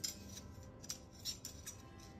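Faint scattered clicks and rustles of a 16mm film strip and its daylight spool being handled as the film is unrolled for loading.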